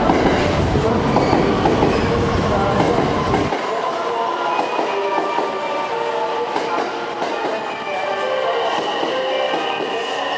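Electric commuter train running into a station platform close by, with wheels clattering over the rails. A heavy low rumble drops away abruptly about three and a half seconds in, leaving lighter running noise and a mix of shifting higher tones.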